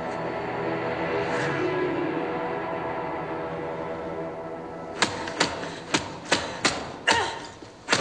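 Steady held music notes, then from about five seconds in a quick run of punches landing on a heavy punching bag, about two to three sharp thuds a second.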